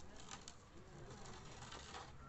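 Faint cooing of a dove over quiet outdoor background noise.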